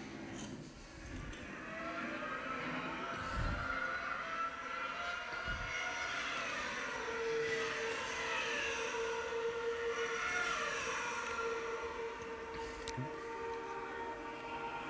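Soundtrack of a Formula 1 pit-stop video playing over a room's speakers: racing-car engines whose pitch slides up and down, joined about halfway through by a steady engine tone.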